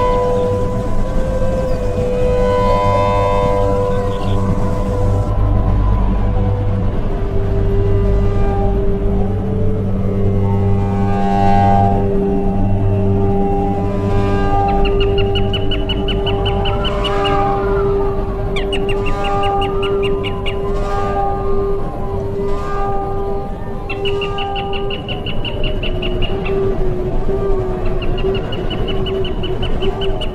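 Background music of long held tones over a low drone. In the second half, high steady trilling tones come in four spells of a couple of seconds each.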